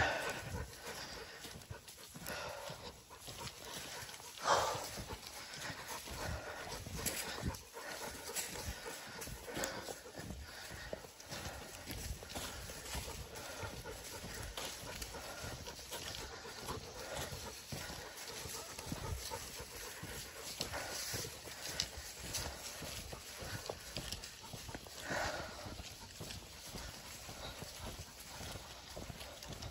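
Footsteps of a person and a leashed dog walking on a dry dirt trail covered in pine needles and leaf litter, with the dog panting in the heat. Two brief louder sounds stand out, one about four seconds in and one near the end.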